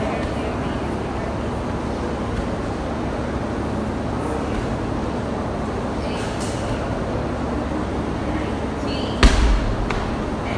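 Medicine ball wall balls: faint slaps of the ball hitting the wall, then the ball dropped to the floor with one heavy thud near the end.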